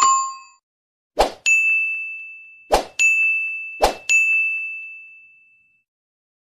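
Animation sound effects: a short click, then a bright bell-like ding that rings out and fades, three times over.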